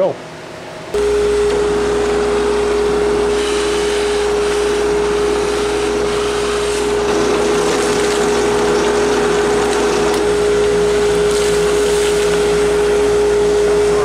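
Bench drill press switched on about a second in, its motor running with a steady hum while a Forstner bit bores through a wooden board into a sacrificial backer board.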